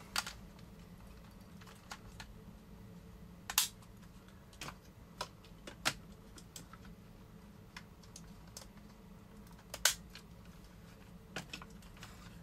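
Scattered clicks and clacks of a chrome-plated plastic transforming robot toy being handled, its parts snapping and tabbing into place, with the two sharpest clicks about three and a half seconds in and near ten seconds. A faint steady hum runs underneath.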